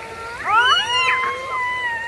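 A young child's long, high-pitched squeal: it rises sharply about half a second in, then is held at one steady high pitch for a couple of seconds.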